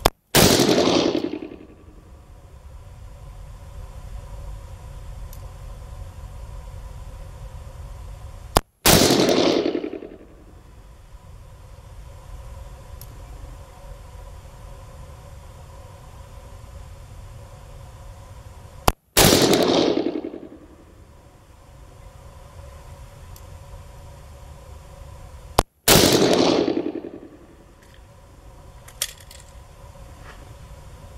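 Four shots from a 4-inch Smith & Wesson Model 29 .44 Magnum revolver firing 240-grain jacketed hollow points, spaced roughly seven to ten seconds apart. Each is a sharp report whose echo dies away over about a second and a half. A faint click comes near the end.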